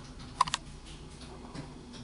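Two light, sharp clicks in quick succession about half a second in, from small objects being handled on a hard surface, over a faint low hum.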